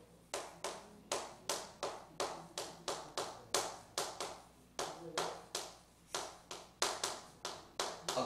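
Chalk writing on a blackboard: a steady run of short, sharp taps, about three a second, as each stroke of the handwriting strikes and scrapes the board.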